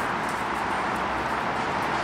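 Steady, even background noise with no speech, holding the same level throughout, with a few faint light ticks.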